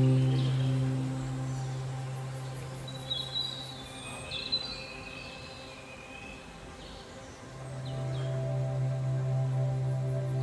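Ambient new-age background music. A held low note fades away, a few high bird-like chirps sound in the quiet middle, and a new held note swells in from about seven and a half seconds.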